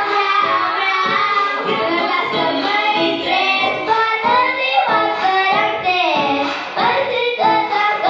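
A young boy singing a Romanian pop song into a microphone over backing music.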